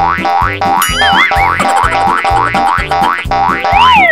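Playful cartoon-style background music with a steady beat, built from quick rising boing-like glides about three a second. About a second in there is a wobbling warble, and near the end one long glide rises and falls.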